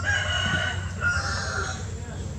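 Rooster crowing, one long call broken briefly about a second in, over a low steady hum.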